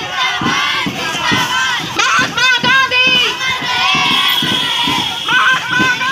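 A crowd of schoolchildren shouting slogans together, in repeated loud bursts of many overlapping high voices.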